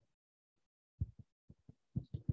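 A quick run of soft, low thumps on a clip-on microphone, starting about a second in after a moment of silence: the microphone being bumped by small body movements.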